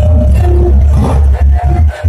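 Javanese gamelan accompaniment for a jathilan dance, played loud with a heavy, booming bass under steady metallophone notes; the sound drops off briefly near the end.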